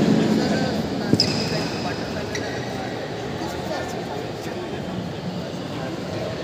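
Badminton rally: several sharp racket hits on the shuttlecock about a second apart, with a short high squeak of a shoe on the court floor about a second in, over the echoing chatter of a large indoor hall.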